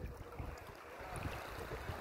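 Shallow seawater lapping and sloshing close to the microphone, with wind buffeting it.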